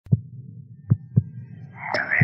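Deep heartbeat-like thumps over a low hum: one beat, then a quick double beat. A wavering electronic tone swells in near the end.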